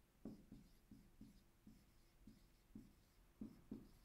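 Marker pen writing on a whiteboard: a run of faint, short strokes as a word is written out.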